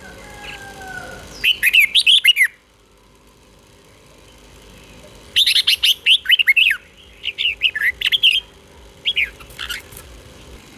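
Red-whiskered bulbul singing: four bursts of quick warbled whistles, each up to a second or so long, with a pause of about three seconds after the first and a short final phrase near the end.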